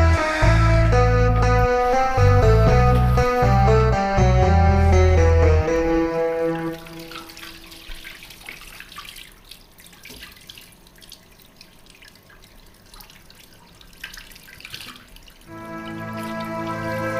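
Background music with a heavy bass line for the first six seconds or so, fading out. Then a bathroom tap running into a sink with hands splashing in the water, before music comes back in near the end.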